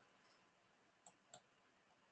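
Near silence with two faint clicks about a second in, a computer mouse being clicked.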